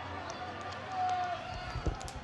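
Pitch-side ambience of an outdoor football ground during a stoppage: a low background hum of the venue with faint, distant voices, including one brief held call about a second in. A few low thuds come near the end.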